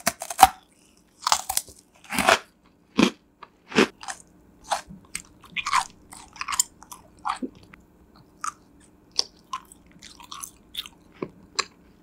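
Close-miked crunching and chewing of crisp freeze-dried food. A few loud crunchy bites come in the first few seconds, then quicker, softer crunches as the food is chewed down.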